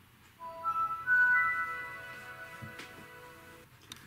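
Windows 7 startup sound played by a Dell Inspiron 1525 laptop as its desktop loads: a chime of notes entering one after another and rising in pitch from about half a second in, loudest at about a second, then fading slowly.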